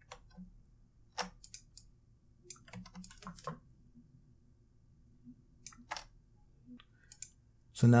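Computer mouse and keyboard clicks: a dozen or so short, sharp clicks at irregular intervals, some in quick clusters, over a faint room hum.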